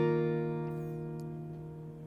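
Acoustic guitar with a capo at the third fret: a C-shape chord played once at the start and left ringing, fading away steadily.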